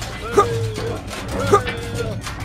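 Short, high-pitched, sped-up cartoon-style voice calls like 'hey yah', two of them about a second apart, over steady background music.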